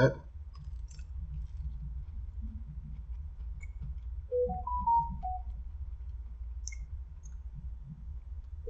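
Quiet mouth clicks and chewing from a man eating a fried cheddar cheese ring, over a steady low hum. About four to five seconds in there is a brief run of pitched tones that step up and then back down.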